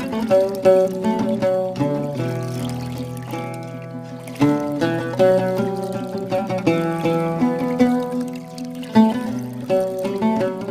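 Instrumental music: a melody of plucked string notes over a steady low drone.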